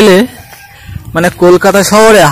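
A man's voice speaking, with a short pause in the middle.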